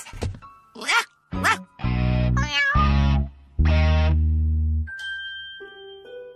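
Cartoon cat meowing and yowling in several loud outbursts through the middle, one of them wavering. Light background music follows from about five seconds in.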